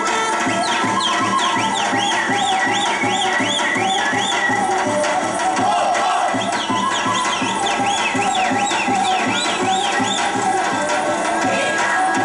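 Balkan folk dance music: a wavering melody over a quick, steady drum beat, with runs of repeated high swooping notes in two passages.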